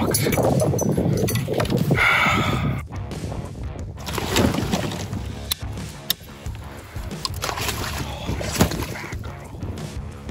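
Water sloshing and splashing around a landing net at a kayak's side, with several sharp clicks and knocks of pliers and lure hooks as a netted musky is unhooked.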